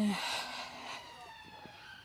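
Distant emergency-vehicle siren, a long tone slowly falling in pitch, with a short burst of hiss over the first second.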